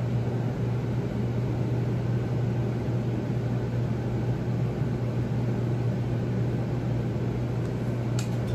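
A steady low mechanical hum with an even hiss over it, unchanging throughout, like a fan or air-conditioning unit running.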